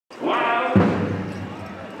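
A pitched, voice-like sound that bends in pitch, cut off about three quarters of a second in by a sudden deep boom that rings on low and fades.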